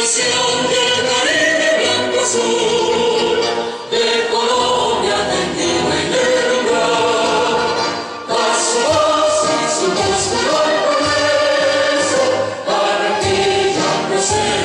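A choir of many voices singing together in phrases about four seconds long, with brief pauses between them.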